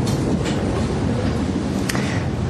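A steady, loud rumbling noise with no distinct events in it.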